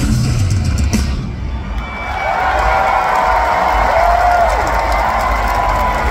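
A live rock band plays at full volume with drums and bass, then stops abruptly about a second in. A stadium crowd follows, cheering and yelling.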